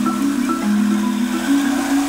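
Background music: low, sustained mallet-percussion notes like a marimba, stepping from one pitch to the next every half second or so.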